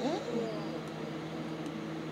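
A person's short voiced sound with gliding pitch near the start, then a steady low hum.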